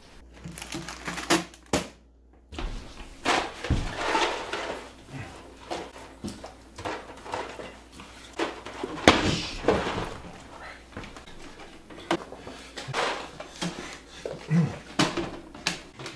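Rustling and knocking as packaged food, among it a crinkly plastic snack bag, is crammed into a clear plastic box. It comes as a string of irregular short noises, with a brief silence about two seconds in.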